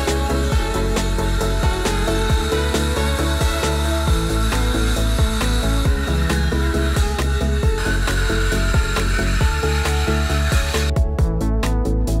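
Electronic background music with a steady beat. Under it, a cordless circular saw runs through a long cut in a large board, and it stops about eleven seconds in.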